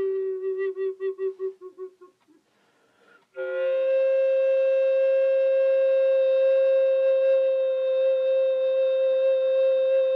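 Solo recorder playing long notes. A held low note pulses about five times a second and dies away, and after a brief near-silent pause a higher note is attacked sharply and sustained steadily.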